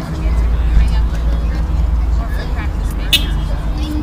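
Distant voices of children and spectators on a youth ball field, over a steady low rumble, with one sharp short sound about three seconds in.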